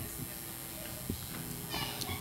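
Faint room sound with a child's high voice and a few soft low thumps.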